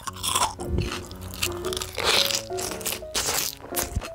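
Crisp crunching bites into chonggak (ponytail radish) kimchi, three crunches in about four seconds, over light background music.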